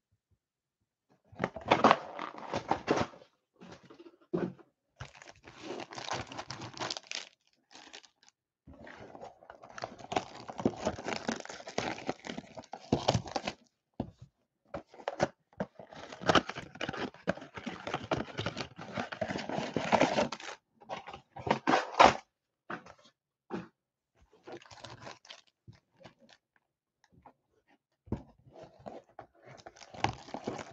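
Cardboard blaster boxes of trading cards being torn open and handled: irregular bursts of tearing, crinkling and crunching, with short pauses and a few sharper rips.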